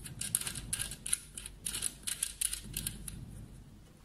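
Threaded metal cable connector being twisted by hand into its socket on a plastic machine housing: a quick run of small clicks and scrapes that dies away near the end.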